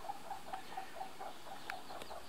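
Faint, rapid chirping from a small calling animal, about seven short chirps a second, over quiet outdoor background hiss.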